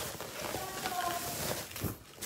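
Tissue paper rustling and crinkling as it is pulled off a wrapped item.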